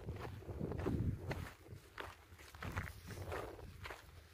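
Footsteps of a person walking over dry grass and earth, several soft steps in a loose, unhurried rhythm.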